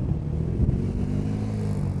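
An SUV driving past close by: engine hum and tyre noise, with a steady engine drone settling in about a second in.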